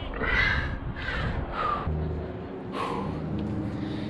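A bird's harsh, cawing calls, about four in quick succession, with a low steady hum coming in about halfway through.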